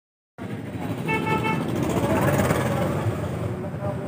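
Street traffic noise with a vehicle horn beeping twice in quick succession about a second in.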